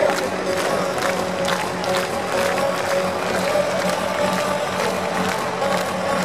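Hardstyle dance music over an arena sound system, with a steady pounding kick drum about twice a second under held synth notes. A crowd cheers underneath.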